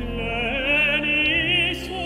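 Tenor soloist singing a classical choral-concert solo in full voice, with wide vibrato on held notes, over a sustained low accompaniment.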